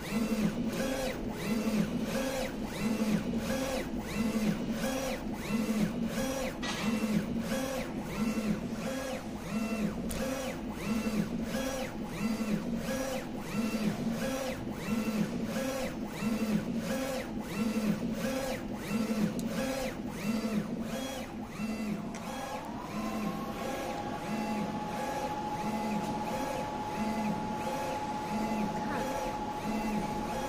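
UV flatbed printer printing onto an acrylic sheet, its print-head carriage shuttling back and forth in an even rhythm of about two passes a second. About two-thirds of the way through, a steady whine joins.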